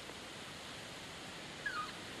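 Steady background hiss from the soundtrack. Near the end comes one brief, faint, wavering high squeak.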